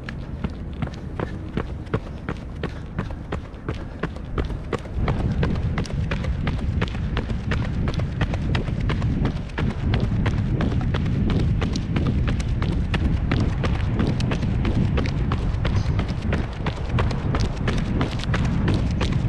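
Running footsteps of Nike Vaporfly Next% 2 racing shoes striking pavement in a quick, even rhythm. A low rumble grows louder about five seconds in.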